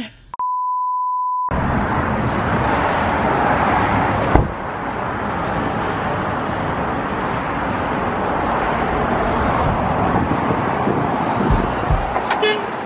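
A steady electronic beep lasting about a second, then a loud, even rushing noise of outdoor air on the microphone, with one brief knock about four seconds in.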